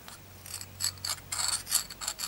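The edge of a piston ring scraped in quick short strokes against the burnt-on carbon crust on the exhaust side of a two-stroke piston, starting about half a second in.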